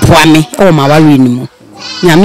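Speech only: a woman talking in a local language into a handheld microphone, with a short pause about three quarters of the way through.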